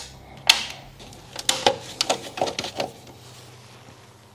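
Sharp plastic clicks at a consumer unit as breaker switches are flipped, the loudest about half a second in, followed by a run of lighter clicks and taps as a screwdriver is handled.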